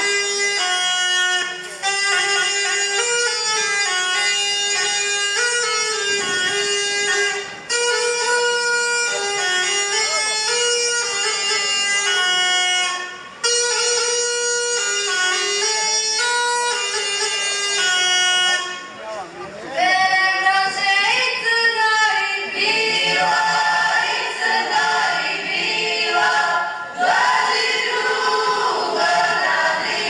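A reed wind instrument, bagpipe-like, plays a folk tune with short breaks between phrases. A little past the middle it stops, and a group of women starts singing a folk song together.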